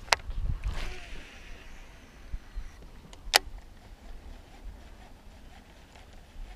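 A cast with a rod and reel: a sharp click, then fishing line hissing off the reel for about two seconds. About three seconds in comes a second sharp click as the reel is engaged to start the retrieve. A low rumble runs underneath.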